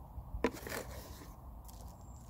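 Handling noise from a new metal mug and its cloth cover: a sharp click about half a second in, then a short rustling scrape as the cover goes into its cardboard box, with a few faint ticks near the end.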